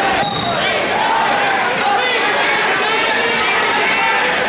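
Many overlapping voices of spectators and coaches shouting at once in a large echoing gym, with a thump near the start.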